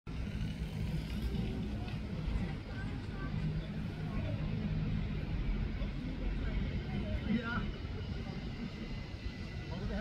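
Outdoor ambience: a steady low rumble, like traffic or wind on the microphone, with faint voices in the distance.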